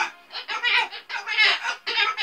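Umbrella cockatoo calling loudly in a quick run of short, pitched squawks, several a second, the sign of a bird agitated and upset.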